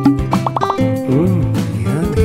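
Background music with a playful logo-animation sound effect: a quick run of about four sharply rising tones about half a second in, then wavering tones that glide up and down.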